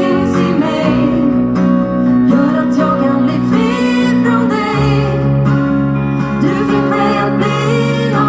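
Live pop song played on guitars, with a woman singing over a sustained bass line that shifts to a lower note about five seconds in.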